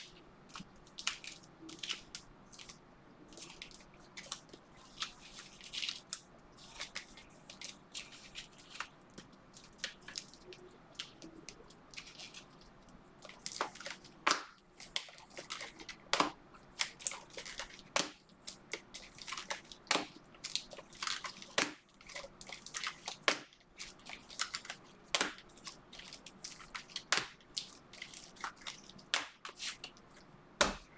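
Trading cards being handled and slid against each other on a table: irregular short scratchy swipes and clicks of card stock, a few a second, growing louder about halfway through.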